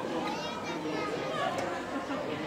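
Overlapping chatter of many people talking at once, with no single voice standing out; some of the voices are high-pitched.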